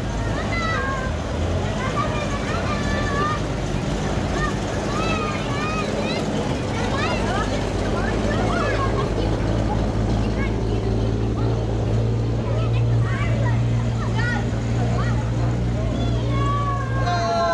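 Engines of WWII military vehicles, a US Army six-wheel truck and a jeep, running at walking pace as they pass close by: a steady low hum that grows somewhat stronger in the second half, with crowd voices over it.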